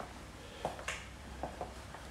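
A few light clicks and taps from footsteps on wooden flooring, spread over about a second.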